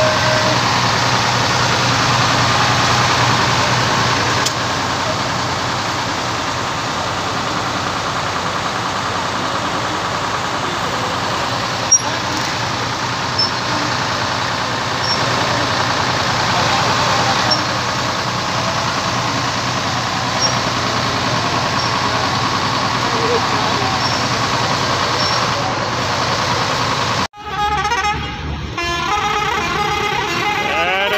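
Decorated passenger coach close by: its engine running steadily, with horn toots and people's voices in a busy mix. About 27 seconds in the sound breaks off abruptly and changes to a vehicle coming along the road.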